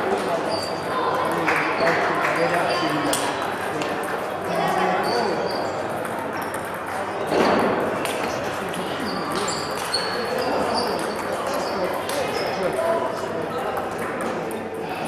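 Table tennis rally: the ball clicks off the rackets and the table again and again, each hit a short, sharp tick. Background voices chatter throughout.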